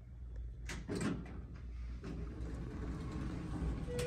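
Sliding doors of a Dover Impulse hydraulic elevator, modernized by Schindler, opening on arrival. A few sharp clicks about a second in, then a low rumble as the panels run open along the track.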